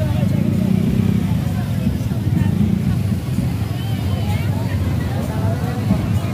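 Several motor scooters and small motorbikes running at low speed close by, a steady engine drone, with people's voices calling and talking over it.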